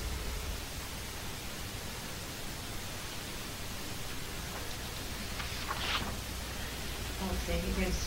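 Steady hiss of an old analogue videotape recording in a quiet room, with one brief soft noise about six seconds in. A man's voice starts faintly near the end.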